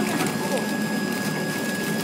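Automatic plasticine packaging machine running, a steady mechanical drone with a thin, high steady whine, while it wraps extruded clay bars in film.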